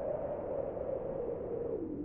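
A string quartet holding a quiet sustained tone at the close of the piece, its pitch drifting slowly up and then back down.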